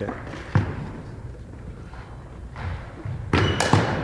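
Cricket ball and bat in a gymnasium: a single thud about half a second in. Near the end comes a quick cluster of sharp knocks as the delivery bounces on the hardwood floor and meets the bat.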